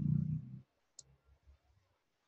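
A brief low sound in the first half-second, then a single sharp computer-mouse click about a second in, over faint room tone.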